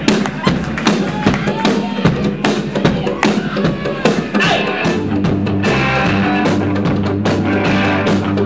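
Live rock band playing, loud. Sharp drum and percussion hits fill the first few seconds, then steady bass and guitar come in about five seconds in.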